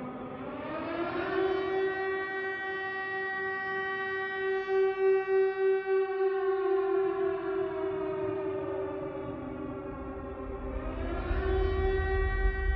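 Air-raid siren winding up to a steady wail in the first second. It holds, winds down from about six seconds, then rises again near the end as a low rumble comes in.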